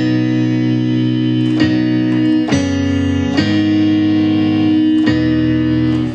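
A simple chord progression in F-sharp major played on a MIDI keyboard through a software instrument. Five held chords, changing about once every second or so.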